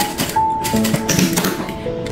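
JUKI industrial lockstitch sewing machine stitching in a short run through a zipper end and fabric tab, a rapid mechanical clatter, with background music playing over it.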